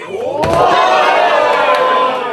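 A wrestler's body is slammed down onto a floor mat about half a second in, followed at once by the crowd shouting and cheering loudly.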